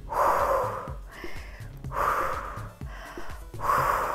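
A woman breathing deeply and audibly, with three strong breaths about two seconds apart and softer ones between them, over soft background music.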